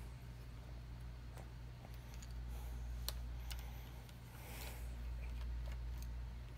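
A few faint, separate clicks and taps from handling the opened Samsung Galaxy S8's small parts and ribbon cables and picking up a precision screwdriver, over a steady low hum.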